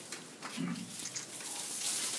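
A man's voice in a pause between sentences: a brief low grunt-like sound about half a second in, then a short breathy hiss near the end.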